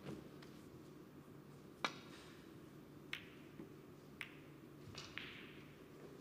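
Snooker cue and balls clicking during a shot: a sharp click, the loudest, about two seconds in, followed by four or five lighter clicks of balls striking each other and the cushions, over quiet arena room tone.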